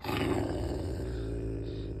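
Rottweiler growling low and steady, guarding its ball.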